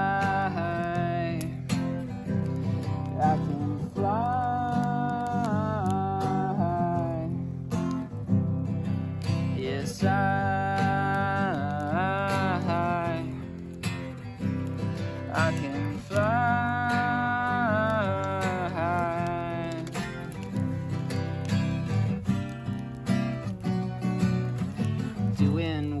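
Acoustic guitar strumming a country-style song, with a melody of long held notes that slide between pitches over it.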